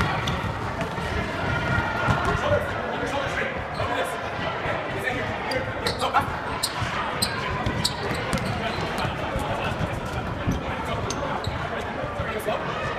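Sports-hall din: overlapping chatter of many people, with scattered sharp knocks and thuds on the wooden floor, echoing in a large hall.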